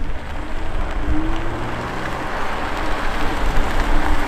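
Toyota GR Supra approaching at low speed, its engine running softly with a low hum over a steady rush of outdoor background noise.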